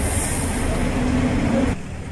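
Street traffic on a jammed road, a steady rumble of idling and creeping vans, cars and motorcycles. About three-quarters of the way through it drops suddenly to a quieter background.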